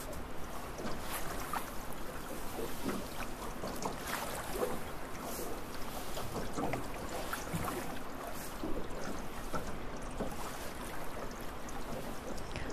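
River water heard from underwater: a muffled, steady wash with many faint scattered clicks and ticks.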